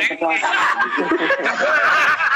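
Men laughing loudly, mixed with bits of talk, heard over a group video call.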